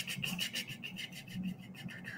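Fast, evenly spaced small plastic clicks, about ten a second, from a computer mouse scroll wheel being rolled, fading out near the end.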